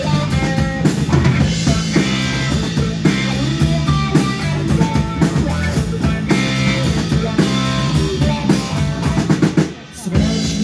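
Live band playing an instrumental passage, the drum kit loudest with snare and bass drum hits over electric bass and guitar. The music drops out briefly just before the end, then comes back in.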